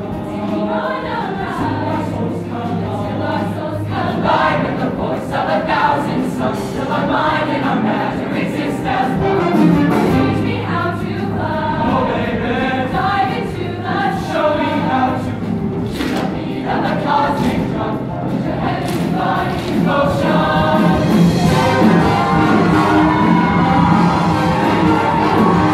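Show choir singing a song in full voice over a band accompaniment, with a steady bass line underneath.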